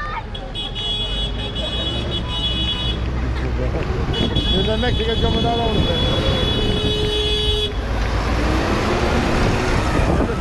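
A large tractor's diesel engine running as it pulls a float past, with a shrill, steady, whistle-like tone that sounds on and off and a horn toot about seven seconds in. Shouts and voices from the crowd are heard over it.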